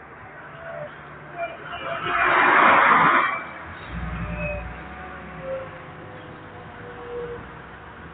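Road traffic heard from a moving car: a loud rush of a vehicle passing close by about two seconds in, then a brief low engine rumble, over the car's steady road noise.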